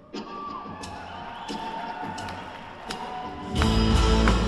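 Live rock band on stage: scattered guitar notes and a held tone over light audience noise, then about three and a half seconds in the full band comes in loudly with bass and drums.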